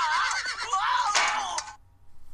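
Film soundtrack clip with a horse whinnying in high, wavering cries, cut off abruptly near the end.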